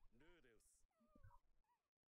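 Near silence, with a faint voice from turned-down anime audio: one short word near the start and a few soft pitched sounds about a second in.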